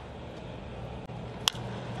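Low, steady ballpark background noise, then a single sharp crack about one and a half seconds in: a baseball bat hitting a pitched ball.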